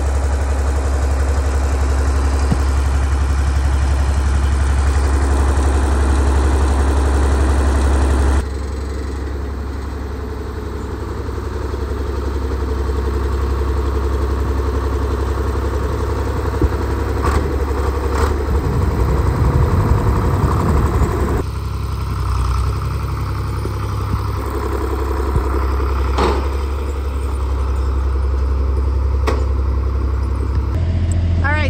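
John Deere farm tractor's engine running at idle, a steady low drone, with a few sharp knocks in the second half.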